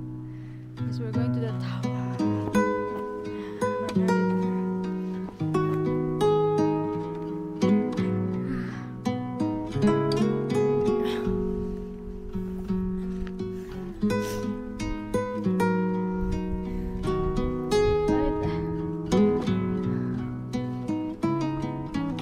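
Instrumental background music: a melody of plucked notes over held low notes, changing every second or so.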